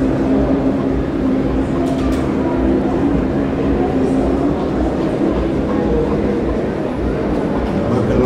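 A man's voice humming a steady, held low drone into a microphone as part of a chanted rain incantation, over a continuous low rumble; the held note fades out about halfway through.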